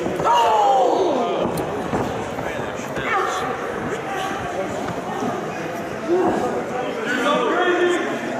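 Bodies slamming and thudding on a pro wrestling ring, mixed with shouting voices, with a falling yell in the first second.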